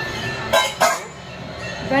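Two short, breathy bursts of a person's voice, about half a second and just under a second in, over a faint steady hum.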